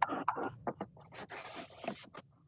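Irregular rustling and scraping handling noise with short clicks, picked up by a video-call microphone.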